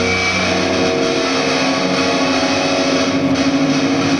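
Distorted electric guitars holding a sustained, droning chord through the amps, the held notes shifting slightly just after it begins.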